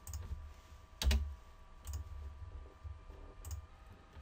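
Computer keyboard and mouse being used: a few scattered key taps and clicks with soft thuds, the loudest about a second in, over a faint steady electronic hum.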